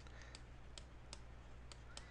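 Faint, irregular clicks of a pen stylus tapping and writing on a tablet screen, about six in two seconds, over a low steady hum.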